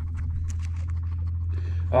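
A steady low hum under faint rustling and scattered light clicks as a gloved hand handles a freshly dug coin among grass and soil.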